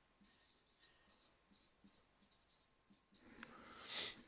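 Dry-erase marker writing on a whiteboard: a run of faint, short scratchy strokes as an equation is written, with a louder rush of noise near the end.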